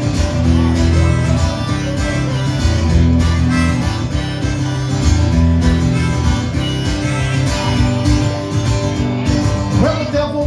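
Acoustic guitar strummed in a steady rhythm: the instrumental introduction of a folk song, played live before the vocals come in.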